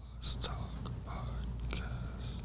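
Quiet, hushed speech close to a whisper, with a few sharp hissing 's' sounds, over a steady low hum.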